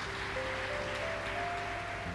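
Soft background music under a pause in the preaching: held notes come in one after another, each a little higher, over a low, steady hum.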